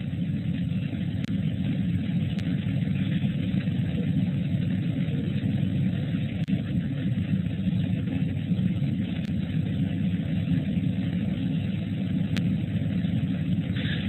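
Steady background noise from an open microphone on a narrow voice line: an even hiss with a low rumble, and a few faint clicks.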